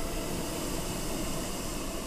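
Hot-air balloon's propane burner firing: a steady rushing noise with no pitch, held evenly.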